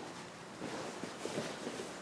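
Quiet room with faint rustling of a cotton karate uniform as the knee is lifted for a front kick.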